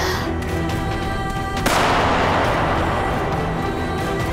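A single gunshot about one and a half seconds in, sudden and loud, echoing away over the next two seconds, over a steady, tense music score.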